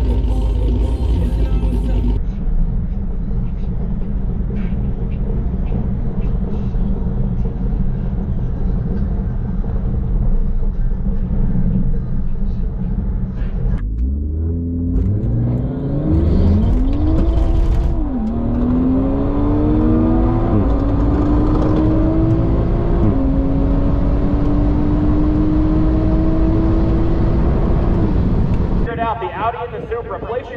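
Toyota GR Supra's turbocharged B58 inline-six heard from inside the cabin: steady running for about the first half, then a hard full-throttle acceleration run. The engine pitch climbs, drops back sharply at each upshift (three times), then climbs slowly near the end.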